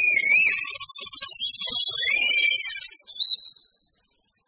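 The closing moments of a Spanish punk rock track, with high, wavering pitched tones over the band. The music stops about three and a half seconds in.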